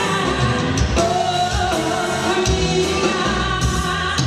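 Live Tejano band playing, with a woman singing lead over button accordion, drum kit, bass and acoustic guitar.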